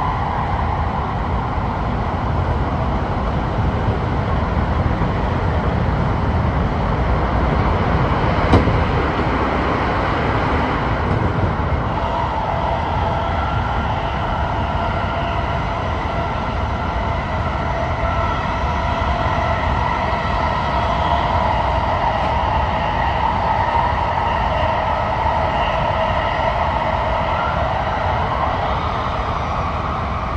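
Sotetsu 20000 series electric train running at speed through a tunnel, heard from the driver's cab: a steady rumble of wheels on rail with a whine from the traction motors on top. One sharp click about eight and a half seconds in.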